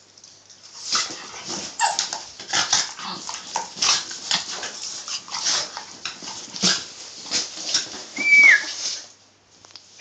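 Two dogs play-fighting face to face ("biteyface"), one of them a basenji: a quick, irregular run of snapping and scuffling, with a short high whine that drops in pitch about eight seconds in.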